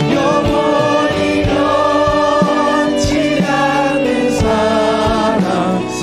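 A worship team singing a Korean praise song together in harmony, with band accompaniment and a steady beat.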